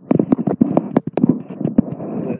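Handling noise: a quick, uneven run of clicks and knocks as a gold metal lipstick tube is worked one-handed to push the bullet back down.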